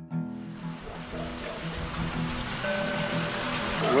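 Soft acoustic guitar music carries on while a steady rushing noise fades up beneath it and grows louder. A man's voice begins at the very end.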